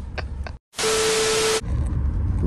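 An edited-in burst of TV-style static with a single steady tone running through it, lasting under a second and starting right after a brief dead-silent gap; the low rumble of the car cabin then returns.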